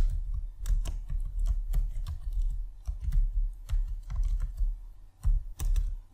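Typing on a computer keyboard: an irregular run of quick key clicks, each with a soft low thud.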